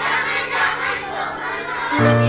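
A group of children's voices calling out together at once, many overlapping, with low steady sustained tones underneath.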